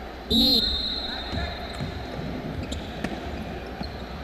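Basketball game on a hardwood court in a large hall: a brief shout with a shrill high tone about a third of a second in, then the ball bouncing and scattered knocks as play moves up the court.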